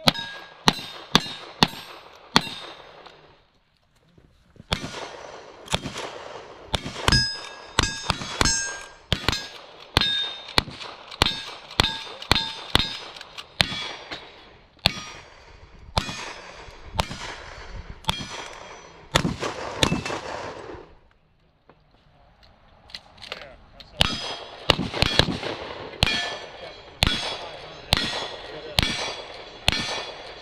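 A string of gunshots from a revolver and then a long gun, each shot followed by the ring of a steel target being hit. The shots come in quick runs with two short pauses.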